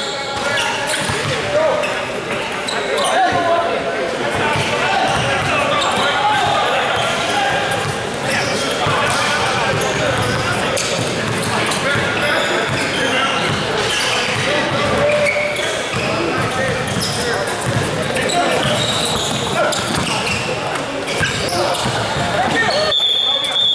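Indoor basketball game: a basketball bouncing on the hardwood court amid indistinct shouting and talking from players and spectators, echoing in a large gym.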